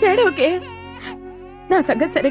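Infant crying in short, wavering wails over sustained background music.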